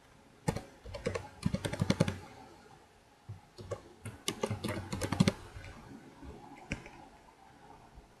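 Typing on a computer keyboard: two quick bursts of keystrokes with a short pause between, then a single click near the end.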